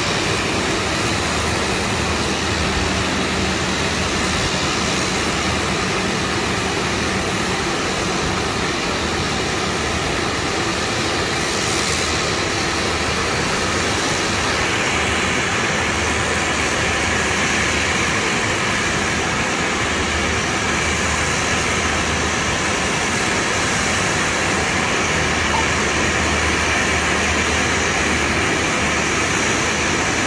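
Small twin-engine turboprop airplane on final approach and touching down, heard as a steady engine drone. A thin whine comes in about halfway through and the sound grows slightly louder as the aircraft nears.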